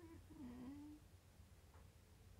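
Near silence, with a faint, short hum of a woman's voice in the first second, its pitch stepping down once before it stops.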